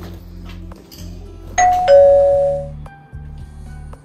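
Two-tone doorbell chime: a higher ding and then a lower dong, ringing out and fading over about a second.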